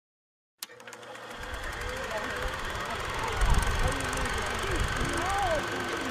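Outdoor ambience fading in after a click: indistinct distant voices over a steady low rumble like traffic, growing slowly louder.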